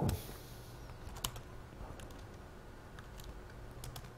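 Faint, irregular keystrokes on a laptop keyboard as shell commands are typed.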